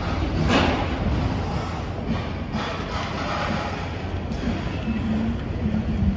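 Busy city street ambience picked up by a phone microphone: a steady low rumble of traffic and noise, with a brief louder swell about half a second in and a low steady hum joining near the end.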